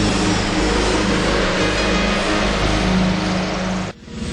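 Music from a TV promo break, dense and steady, which cuts off suddenly just before the end.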